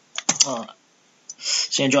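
Typing on a computer keyboard: a quick run of keystrokes as a command is entered.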